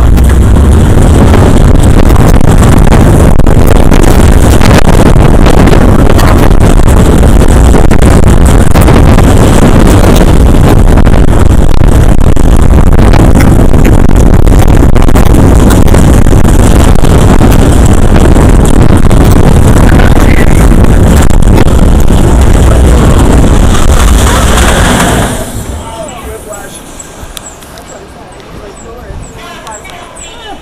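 Loud, steady rush of wind on the microphone and rumbling running gear of an Arrow Dynamics suspended roller coaster train in motion, heard from a rider's seat. About 25 seconds in the noise drops off sharply as the train slows into the station.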